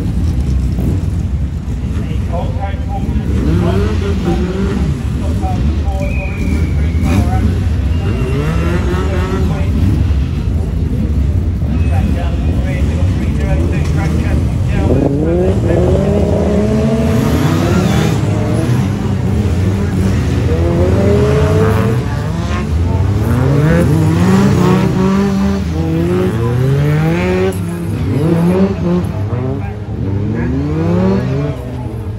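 A pack of Brisca F2 stock cars racing, several engines revving up and falling back over and over as they accelerate down the straights and lift for the bends, over a steady low engine drone.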